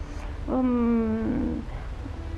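A woman's drawn-out hesitation sound, a single held vowel of just under a second at a steady, slightly falling pitch, as a filled pause in speech.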